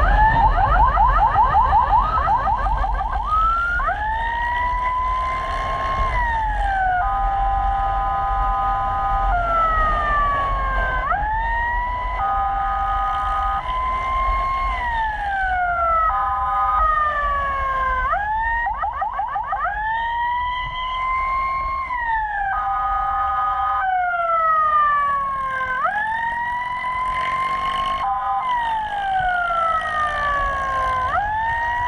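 Electronic emergency siren cycling through its modes, sounded on a run to a fire. It gives a fast warble in the first few seconds and again about two-thirds of the way through, long rising-and-falling wails, and short steady chords in between, over the low rumble of a moving motorcycle and wind.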